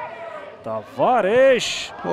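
Speech only: a male television football commentator's voice.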